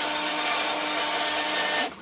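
WLtoys 16800 RC excavator's electric slew motor and gears running with a steady whir as the upper body turns round continuously, stopping suddenly near the end when the stick is released.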